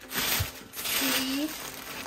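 Tissue paper and plastic bubble wrap crinkling and rustling as packing is pulled out of a cardboard box, loudest in the first second.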